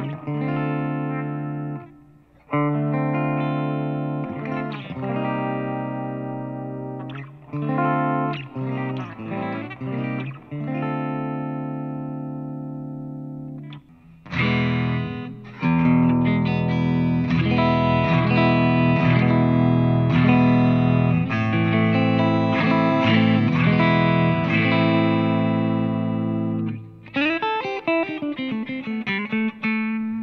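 AIO SC77 single-cut electric guitar played with a pick through a Fender GTX100 amp on its clean setting. Strummed chords ring out and fade for about the first half. After a short break about halfway through, a busier, louder picked passage follows, played with a stainless steel pick, and a new phrase starts near the end.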